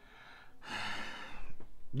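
A man's breath: one long sighing exhale lasting about a second.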